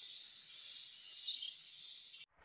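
A steady, high-pitched insect chorus: one sustained whine over a fainter hiss, unbroken throughout and easing slightly toward the end.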